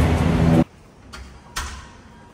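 Music that cuts off suddenly about half a second in, leaving quiet indoor room tone with two light clicks, the second, about a second and a half in, sharper and louder.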